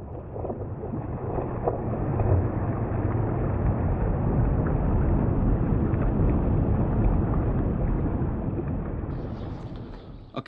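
A fast-flowing, shallow rocky river rushing, as a steady, even wash of water noise that fades in at the start and fades down near the end.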